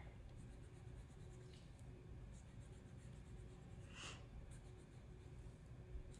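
Faint scratching of a pencil drawing squiggly lines on paper, with one short brighter scratch about four seconds in.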